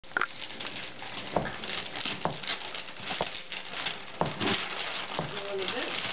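Gift wrapping paper rustling, crinkling and tearing as a wrapped box is opened, with sharp crackles about once a second.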